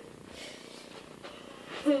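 Quiet room noise with a few faint soft noises, then a person starts laughing near the end.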